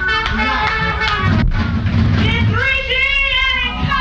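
Live jazz band playing, a pitched melody line over a steady low bass.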